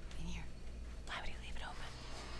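A woman whispering in two short stretches, over a steady low hum.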